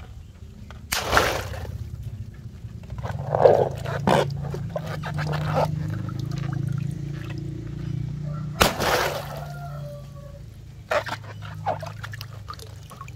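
Water balloons pierced with a fork and bursting, each with a sharp pop and a rush of water splashing into a tub, twice: about a second in and again near nine seconds. Between the bursts come smaller splashes and drips of water, over a steady low hum.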